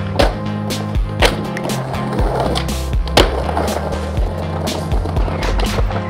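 Skateboard being ridden on concrete: wheels rolling, with three sharp pops and landings about a second in, a second later and about three seconds in, over background music with a steady beat.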